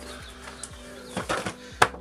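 Quiet background music, with handling of a plastic-windowed cardboard toy box and a single sharp knock near the end as the box is set down on the counter.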